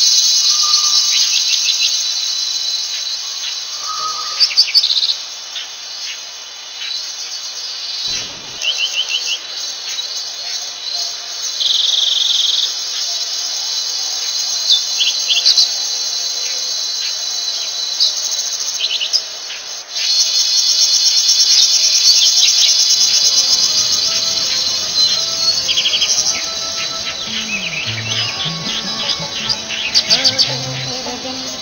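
Forest ambience: a continuous high-pitched insect chorus with short bird chirps and calls over it. The insect sound breaks off briefly about twenty seconds in, then resumes.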